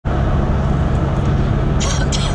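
Steady road and engine noise heard from inside a moving car's cabin: a low rumble with a constant low hum. Near the end come two brief hissy sounds.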